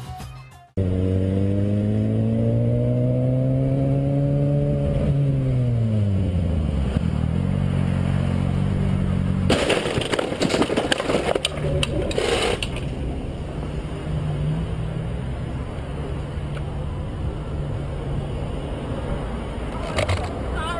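Motorcycle engine heard from the rider's helmet camera, rising in pitch under acceleration for about four seconds, then falling off. About ten seconds in, a loud crash with scraping and clattering lasts about three seconds as the bike hits the back of a car and goes down, after which a lower engine tone continues.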